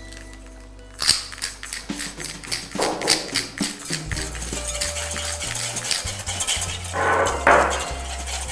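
Wire whisk beating a dressing in a glass bowl: rapid, even clinking of metal on glass, about six strokes a second, starting about a second in. Background music plays underneath.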